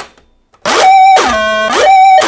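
Soviet toy synthesizer playing a buzzy, harmonic-rich note that starts about half a second in, its pitch repeatedly sliding down and back up about once a second over a steadier high tone.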